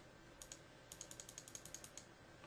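Faint clicking at a computer: a couple of small clicks about half a second in, then a quick run of about a dozen clicks in the second half.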